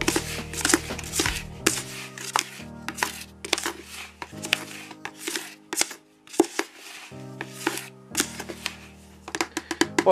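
A plastic scoop stirring and turning dry groundbait meal in a plastic bucket: a quick run of gritty scrapes and rustles, some sharper where the scoop knocks the bucket wall. Background music with held chords plays underneath.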